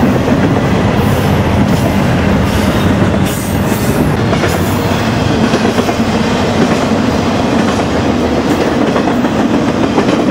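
Cars of a double-stack intermodal freight train passing close by, a loud steady rolling rumble of steel wheels on rail.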